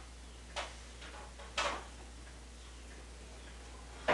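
Quiet room tone with a low steady hum, broken by two short soft clicks about a second apart, the second one louder.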